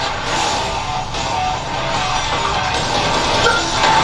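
Anime soundtrack music with guitar, playing steadily throughout.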